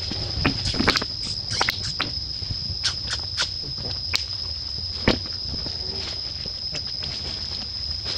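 Forest ambience: a steady high-pitched insect drone, with scattered short clicks and chirps, the sharpest click about five seconds in.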